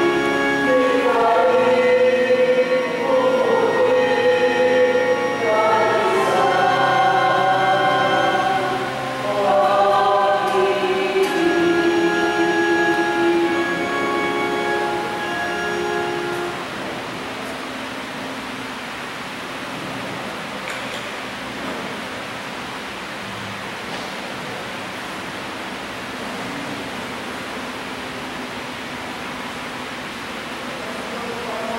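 A group of voices singing a slow hymn in long held notes, stopping a little over halfway through; after that only a steady hiss of room noise.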